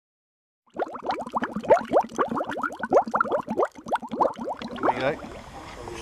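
A rapid string of bubbly plops, each a quick rising blip, starting about a second in and thinning out near the end.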